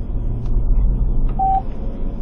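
Steady low rumble inside a moving car, with one short, single-pitched beep about one and a half seconds in: the on-hold tone of a phone call over the car's speakers.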